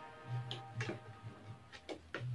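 Several light, sharp clicks and ticks of bonsai wire being handled and brought against the branches of a serisa tree, over soft background music.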